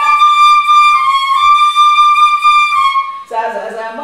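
A bamboo Carnatic flute plays a few long held notes of a melody, with small bends between them. About three seconds in the flute stops and a woman's voice comes in.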